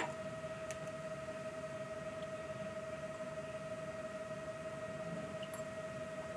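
A steady hum at one fixed pitch with a fainter overtone, with a faint click at the start and another a little under a second in.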